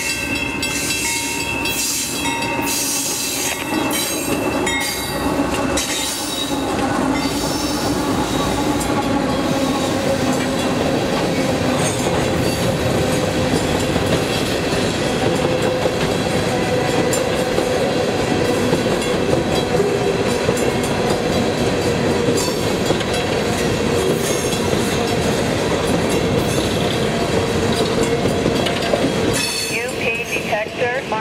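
A loaded Union Pacific coal train passing close by at a grade crossing. GE C44AC diesel locomotives go by in the first few seconds with a clatter of wheels. Then the coal hopper cars roll past with steady rolling noise, clicking wheels and a steady wheel squeal from about eight seconds on.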